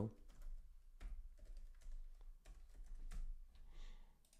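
Typing on a computer keyboard: faint, irregular key clicks as a short filename is typed.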